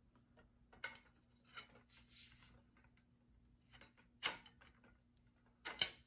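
Metal poles of a portable projector-screen stand clicking and knocking as they are slotted into their joints, a handful of separate clicks with the sharpest about four seconds in and just before the end.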